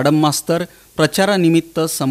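A man speaking in steady news voice-over narration, with a short pause about half a second in.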